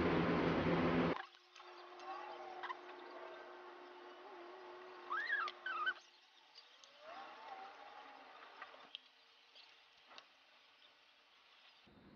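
A loud steady hum stops abruptly about a second in. Then faint bird calls come over quiet background noise, the clearest a rising-and-falling chirp about five seconds in.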